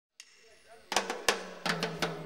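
Reggae band's drum kit striking a few sharp hits, snare among them, starting about a second in, with a low held note under them near the end, as the live band starts up.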